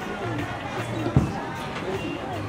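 Indistinct chatter of voices in the background, with one dull thump a little over a second in.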